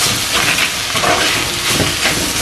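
Chopped onions and spices frying in oil in a clay pot, a steady sizzle, while a spatula stirs and scrapes the mixture against the pot.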